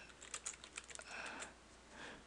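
Computer keyboard typing: a quick, irregular run of faint key clicks as a short phrase is typed out.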